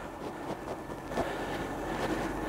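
Steady road noise of a vehicle moving along asphalt, engine and tyres, with a faint steady high whine over it.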